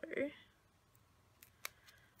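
Fingernails handling a paper sticker on a planner page: a few short, sharp clicks and taps about a second and a half in, as a sticker is peeled up and pressed down.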